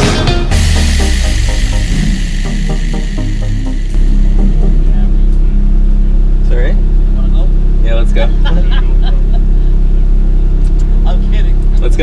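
Background music plays until about four seconds in, then the Ferrari F430's V8 idles steadily, heard from inside the cabin.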